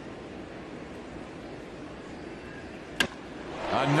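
Stadium crowd murmur, then, about three seconds in, a single sharp crack of a wooden baseball bat hitting a pitched ball for a home run, with the crowd noise swelling just after.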